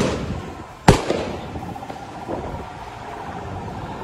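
Two loud gunshots just under a second apart, one at the start and one just before the one-second mark, each trailing off in an echo. A steady background hum follows.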